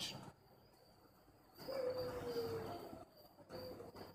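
A bird calling: one long tone of about a second, falling slightly in pitch, then a shorter one near the end.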